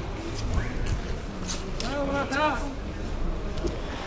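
Indistinct voices of people talking, faint and broken up, clearest about two seconds in, over a steady low background rumble.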